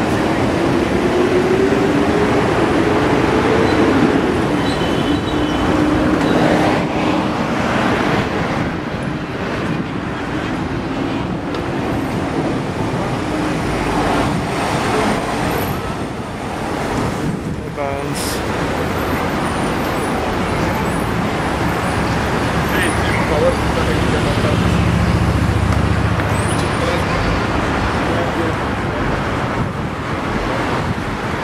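Road traffic on a busy city avenue: cars and buses passing in a steady wash of noise. An engine rises in pitch over the first few seconds, and a deeper engine rumble passes near the end.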